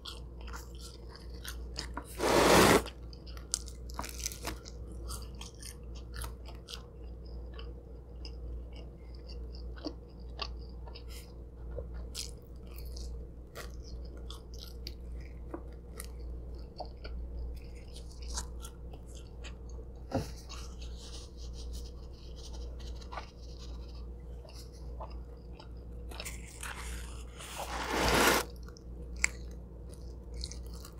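Close-miked chewing and biting of a cheese pizza slice, with many small wet mouth clicks. Two louder noisy bursts stand out, one a couple of seconds in and one near the end. A low steady hum runs underneath.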